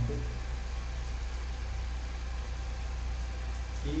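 A steady low hum with a faint hiss underneath, unchanging throughout.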